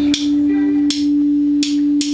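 An electric guitar holds a steady drone note through its amplifier at the opening of a song, with sharp ticks about every three-quarters of a second.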